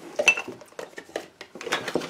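Empty cosmetic and candle containers clinking and knocking together as they are handled and sorted, an irregular run of short clicks and clatters.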